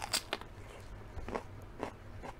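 A crisp bite into a raw mini sweet pepper at the very start, followed by a few softer crunches as it is chewed.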